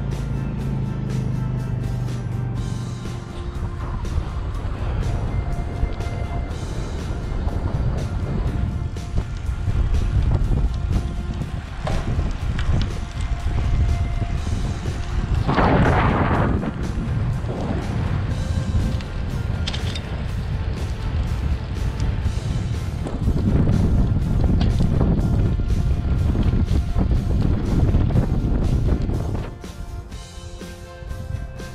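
Heavy wind buffeting on the microphone of a camera riding on a moving bicycle, a low, fluctuating rumble with a louder burst about halfway through. Background music plays underneath.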